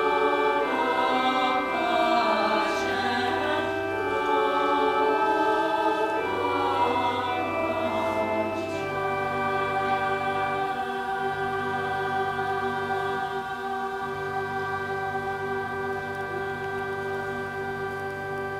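Women's choir singing with organ accompaniment. About halfway through the voices stop and the organ carries on alone with steady held chords over a slowly changing bass.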